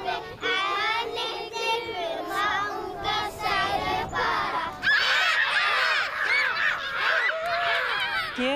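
A group of young children singing together in unison. From about five seconds in, many children's voices call out at once, louder and overlapping.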